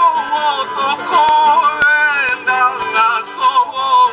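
A man singing to his own acoustic guitar, his voice sliding and wavering between notes.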